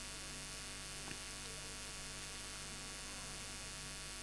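Steady electrical mains hum with a faint hiss, picked up through the microphone and sound system, with one faint tick about a second in.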